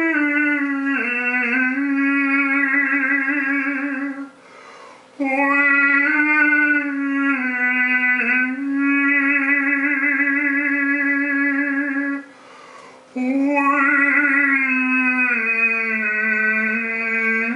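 Overtone singing: a man holds long, steady vocal drones while shifting the bright upper overtones above the held note. He breaks twice for breath, about four and twelve seconds in.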